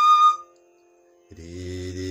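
A bamboo flute holds one steady high note that cuts off shortly after the start. After a brief silence, a man's low voice begins singing the note names of the phrase near the end.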